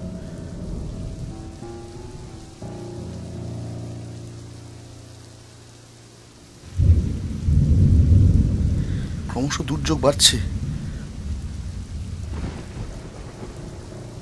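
Thunderstorm sound effect in an audio drama: held background music tones fade away, then a sudden thunderclap about seven seconds in breaks into a long rolling rumble with rain, with a sharp crackle about three seconds later.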